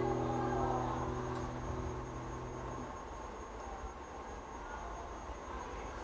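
The final chord of a nylon-string classical guitar rings out and fades away. Its lowest note dies out about three seconds in, leaving a faint hush.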